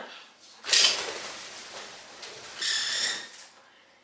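Caged pet birds: a sudden noisy rustle about a second in that fades away, then a short, shrill call a little before the end.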